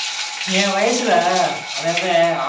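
A man speaking, starting about half a second in.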